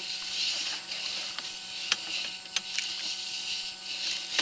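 Sewer inspection camera's push cable being fed down the line, a steady hiss over a faint steady hum, with a handful of short sharp clicks at irregular intervals.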